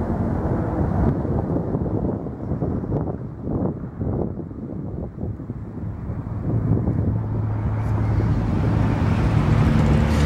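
Road traffic noise with wind on the microphone; a low engine hum grows louder from about two-thirds of the way through.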